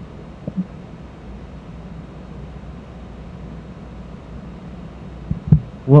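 A lull in talk: steady low room noise with a hum, and a faint thump or two near the end just before a voice starts.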